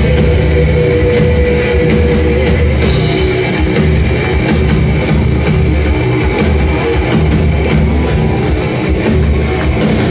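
Power metal band playing live and loud: distorted electric guitars, bass guitar and drum kit, with a held note over the first couple of seconds.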